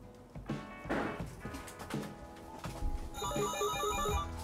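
Background music, then about three seconds in a telephone starts ringing with an electronic ringtone: a repeating pattern of short tones.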